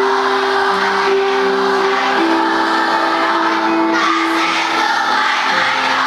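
A large group of schoolchildren singing a song together in unison as a choir, holding long notes that change about once a second.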